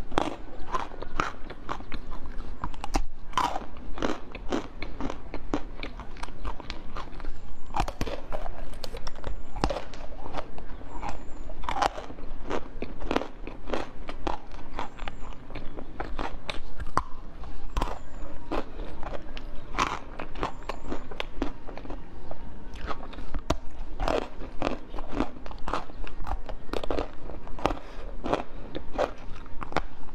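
Close-miked biting and chewing: a person crunches through firm chunks pulled off wooden skewers, in an irregular run of crisp crunches throughout.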